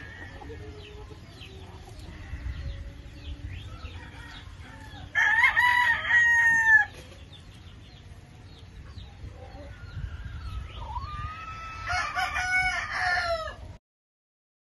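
Gamefowl roosters crowing: one loud crow about five seconds in, lasting under two seconds, then longer crowing of several overlapping voices near the end that cuts off suddenly. Short faint calls come in between the crows.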